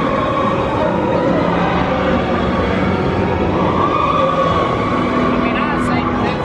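TRON Lightcycle Run roller coaster train speeding along its steel track overhead: a loud, steady roar of wheels on track with a humming tone that shifts in pitch partway through.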